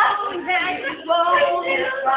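A group of young voices singing together loudly, several voices overlapping on held notes, with a short break about a second in.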